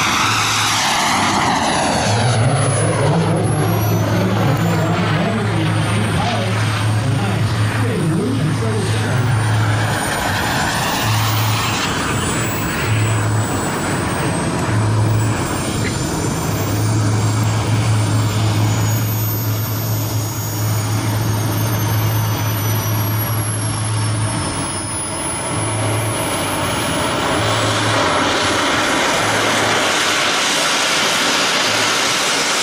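Gas turbine of a 1/5-scale BVM F-16 model jet: a rushing high whine that sweeps down in pitch as the jet passes low in the first few seconds, then a steadier, more distant whine as it flies out and circles. A low hum cuts in and out underneath.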